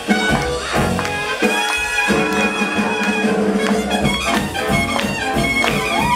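Swing jazz band playing an instrumental passage, brass horns holding notes over a steady beat.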